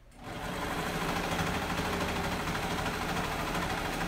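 Serger (overlock sewing machine) starting up just after the start and running steadily at speed as it stitches a seam on fabric.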